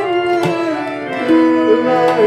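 Instrumental passage of a Hindustani thumri: harmonium and sarangi holding and bending a melody over tabla strokes.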